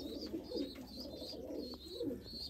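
Domestic pigeons cooing softly in a loft, a low continuous burbling, with a series of short high chirps repeating above it.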